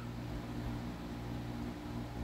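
Steady low hum with an even hiss over it: room tone with no distinct events.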